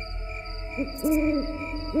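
Owl hooting three times, a short hoot and then two longer ones, over a low steady spooky music drone with soft pulsing tones.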